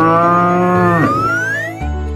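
A cow's moo, used as the cartoon bison's call: one long lowing call that stops sharply about a second in. A single rising tone follows, over background music.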